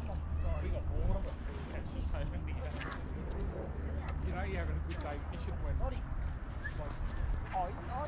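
Indistinct voices talking throughout, too unclear to make out words, over a steady low rumble.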